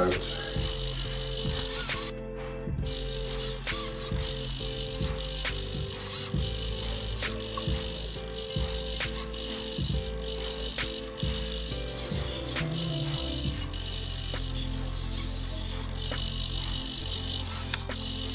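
Small RC hobby servos of an Arduino-driven plot clock working in short, irregular moves as the arm drags a whiteboard marker over the board, wiping it and then writing the digits of the time. A steady hum runs underneath, with many small clicks as the servos start and stop.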